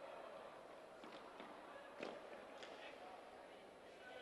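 Near silence: faint arena ambience on a rink hockey court during a stoppage, with a few faint clicks.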